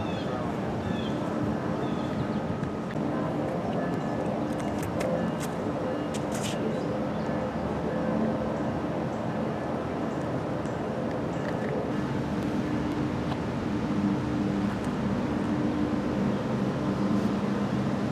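Steady outdoor background noise with a low hum of road traffic, and a few brief high ticks a little before the middle.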